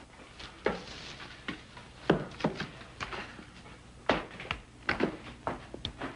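A handful of irregular light knocks and thuds, about seven over six seconds, as objects are carefully handled and set down.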